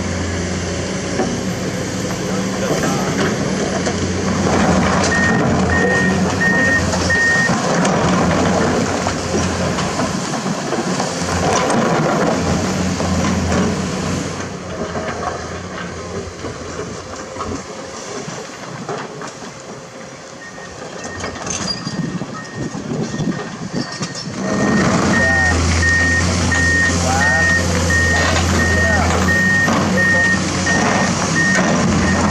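Diesel hydraulic excavators running under load, with rock and stones clattering as the buckets dig. A beeping reversing alarm sounds briefly about five seconds in and again through the second half. The machinery is quieter for a spell around the middle.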